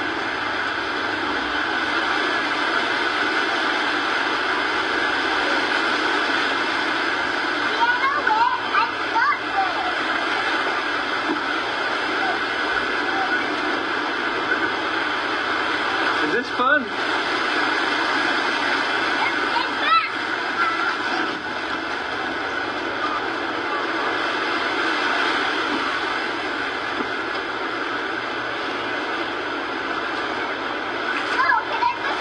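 Steady wash of waves on a beach, with a few brief faint voices or calls about eight, seventeen and twenty seconds in.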